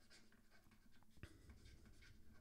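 Faint scratching and tapping of a stylus writing on a tablet screen, with one sharper tick about a second in.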